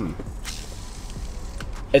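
Shimano Scorpion DC baitcasting reel being cranked by hand, its gears giving a faint, soft whir. After a service it is no longer clanky but still not as smooth as new, a sign of worn gears that would usually be replaced.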